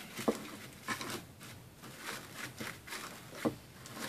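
Artificial pine greenery rustling and crackling as its stiff wired stems are pushed down into a small wooden sleigh, with a few light clicks and taps.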